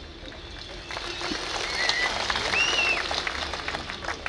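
Crowd applauding, building about a second in and carrying on until the speaker resumes, with a couple of short whistles rising and falling in the middle.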